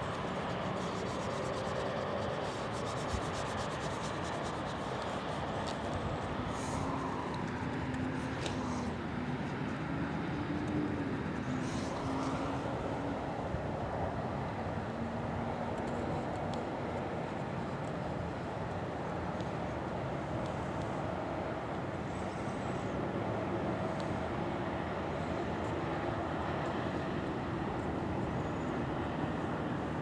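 Steady outdoor urban background rumble of distant traffic, with a faint engine tone that rises and falls near the middle.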